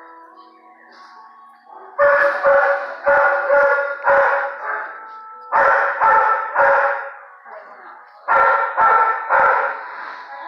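A dog barking loudly in three runs of barks, five, then three, then three, about half a second apart.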